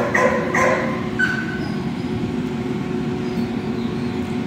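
Two dogs playing: a brief rough dog vocalisation in the first second, then a steady low hum in the background for the rest.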